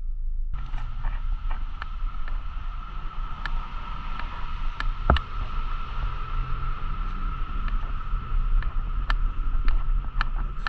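Footsteps and scattered clicks and knocks of carried gear while walking outdoors, over a steady background of low rumble and a constant high hum. The sharpest knock is about halfway through.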